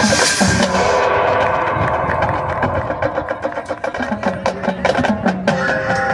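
High school marching band playing live on the field: held wind and brass chords with a bright crash at the start, and sharp drum and percussion strokes coming through more strongly in the second half.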